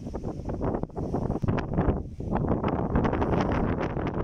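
Wind buffeting a handheld phone's microphone, a loud, uneven rumble that surges in gusts.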